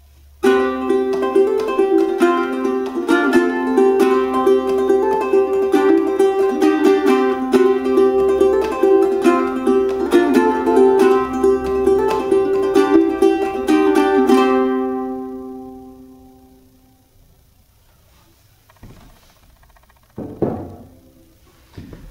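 Fluke tenor ukulele with a solid koa top and hardwood fretboard being played: a tune in strummed and plucked chords. It ends on a chord that rings on and fades away over a couple of seconds.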